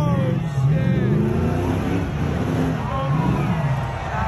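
Pickup truck engine revving up and down about three times during a burnout. A tyre squeal falls away right at the start.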